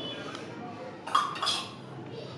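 A steel spoon clinks twice against a small steel bowl, a little over a second in, with a brief metallic ring, as ground spice powder is tapped out of the bowl onto a steel plate.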